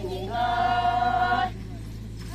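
A group of women singing a traditional dance song in unison, holding one long note that breaks off about a second and a half in.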